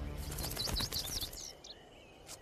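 Birds chirping: a quick run of short, high, downward-sweeping chirps in the first second and a half, over a low rumble that fades away.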